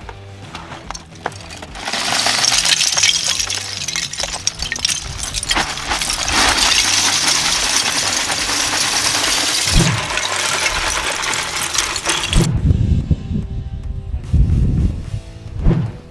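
Hundreds of small plastic Lego pieces poured out of a bag onto asphalt, a dense rattling clatter of many tiny clicks lasting about ten seconds, over background music with a steady beat. A low rumble follows near the end.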